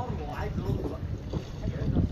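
Steady low rumble on a dive boat's deck, of wind on the microphone and the boat, with voices talking briefly near the start.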